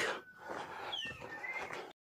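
Faint bird calls in a quiet outdoor scene: a short falling whistle about a second in, then a short rising one.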